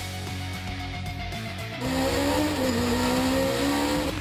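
Racing car engines coming in over background music about halfway through, their pitch dipping and then climbing again.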